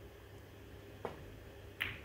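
Snooker cue tip striking the cue ball, a single sharp click about a second in, followed shortly before the end by a second, brighter click as the ball makes contact on the table.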